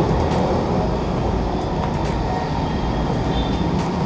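Steady low rumble of vehicle noise, with a few faint clicks.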